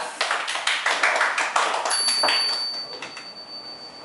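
Applause from a small audience, dense at first and thinning to scattered claps by the end. About halfway through, a thin high steady tone comes in and holds.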